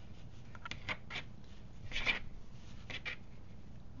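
Fabric rustling and rubbing in short strokes as a strip of fabric loops is pulled and pushed along a needle and thread to gather it, the loudest stroke about two seconds in.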